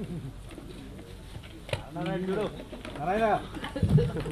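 Indistinct voices in a room, with a few drawn-out rising-and-falling vocal sounds about halfway through and again a second later, and a short low bump near the end.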